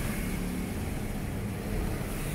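Steady background noise with a faint low hum, no distinct event.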